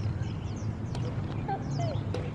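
A gecko calling: short gliding croaks in the second half, the "booing" of the caption. A single sharp racket strike on a shuttlecock comes about a second in.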